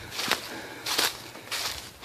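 Footsteps crunching through dry fallen leaves, several uneven steps.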